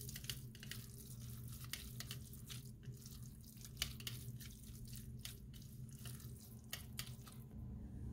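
Silicone spatula stirring moist grated zucchini in a glass bowl: faint, irregular wet squelches and light scrapes.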